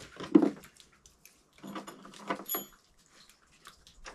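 A wrench working on the steel bolts of a snowmobile rack: a knock about a third of a second in, then a run of clicks and clinks of the tool on the bolts, with a short metallic ring about two and a half seconds in.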